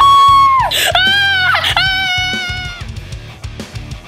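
A person's two long, high screams of shock, the first dropping in pitch as it ends, over background music with guitar and a steady beat. The music carries on alone for about the last second.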